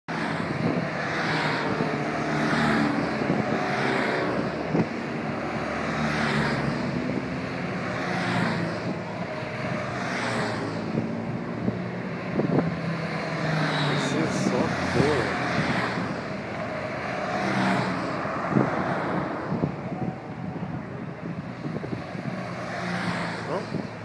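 Police motorcycles of a motorcade escort riding past on a city street, their engines running steadily, with a sound that swells and fades about every second and a half.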